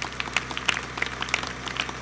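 Audience applauding: many scattered, irregular hand claps, quieter than the speech around them.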